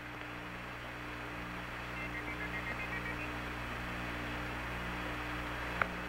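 Open radio channel on the Apollo 11 air-to-ground link: steady static hiss over a low mains-type hum between transmissions, with a brief click near the end.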